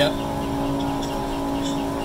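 Steady machine hum from an LCD screen-separator machine's heated vacuum plate, its suction pump running to hold the phone screen down while the glass is separated. It holds one unchanging low tone with fainter higher tones above it.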